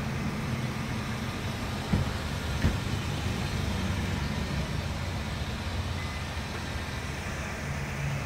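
Steady low hum of a motor vehicle, with a couple of faint knocks about two seconds in.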